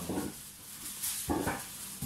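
Two short voiced sounds about a second apart, a person's brief murmur or half-word, with faint room noise between them.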